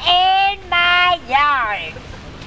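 A high-pitched singing voice in a child's or woman's range: two short held notes followed by a wavering, sliding note, with little accompaniment beneath it.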